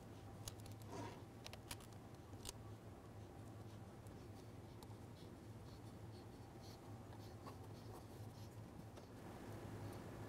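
Faint rustles and small ticks of hands handling and pressing a vinyl decal stripe onto plastic bodywork, over a steady low hum.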